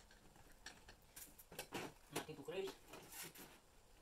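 Metal TV wall-mount bracket arms being shifted and extended by hand: a series of faint, light metallic clicks and knocks.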